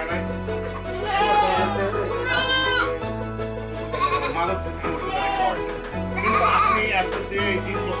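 Goats bleating several times, with the clearest calls about two and a half seconds in and again around six to seven seconds, over background music with a steady bass line.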